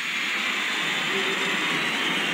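Large concert audience cheering and applauding, a steady wash of crowd noise after the music has stopped.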